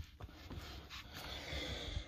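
Faint rubbing and handling sounds as a silicone intercooler hose is worked onto the intercooler's outlet neck, with a light click at the start. The hose is a tight fit.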